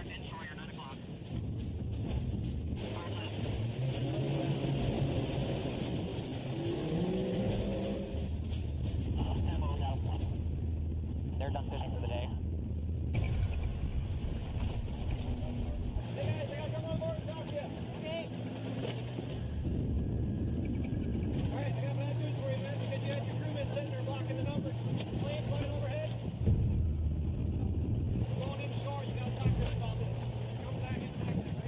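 Boat motor running over choppy water, its pitch stepping up and down a few times, under a background music score.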